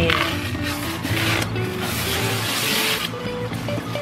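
Clear plastic wrap crinkling and rustling as it is pulled off a new air fryer, in a few bursts, the longest lasting about a second and a half near the middle.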